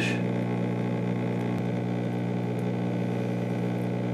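A steady mechanical hum made of several held tones, with no change in pitch or level.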